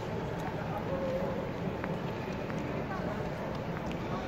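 Busy airport terminal hall ambience: indistinct chatter of many distant voices with footsteps and small scattered clicks over a steady background hum.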